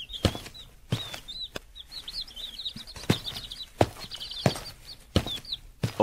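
Cartoon footstep sound effect, a sharp step about every two-thirds of a second, over a steady background of small birds chirping.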